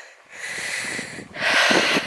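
A walker's breathing close to the microphone: a softer breath, then a louder, longer one about halfway through.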